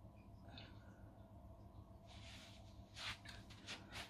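Near silence: room tone with a faint steady hum. Near the end come a few soft rustles of a person shifting on a carpeted floor.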